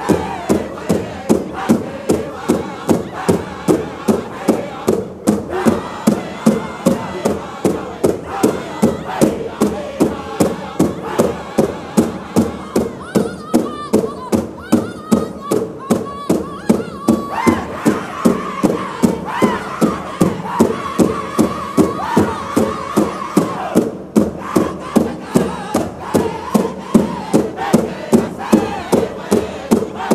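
Powwow drum group playing a contest song for women's traditional dancers: a big drum struck in a steady, even beat of about two to three strokes a second, under a group of voices singing together at a high pitch.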